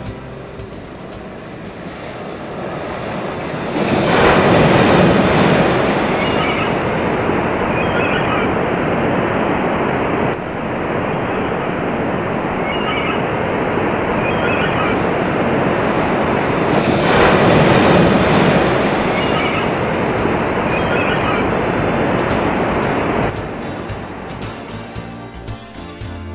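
Ocean surf: waves breaking on rocks, with two big surges, one about four seconds in and another around seventeen seconds, and a steady wash of water between. Short high chirps recur faintly above it.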